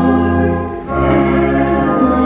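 Hymn sung by voices with organ accompaniment: sustained chords over a steady low bass, moving to a new chord a little under a second in.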